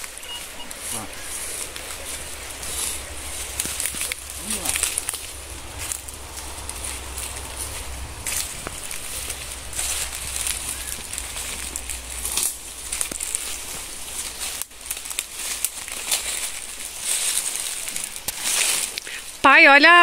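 Footsteps crunching and rustling through dry leaf litter, a run of irregular crackles over a steady high hiss.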